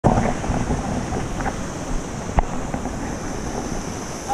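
Wind buffeting a GoPro microphone over a steady hiss of falling water, with one sharp click about two and a half seconds in.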